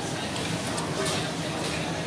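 Busy restaurant background: indistinct voices of other diners chattering over a steady low hum.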